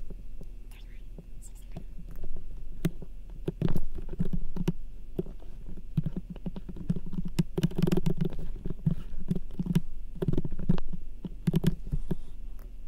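Low, indistinct muttering under the breath, with scattered clicks of a computer keyboard and mouse as numbers are typed in, over a steady low hum.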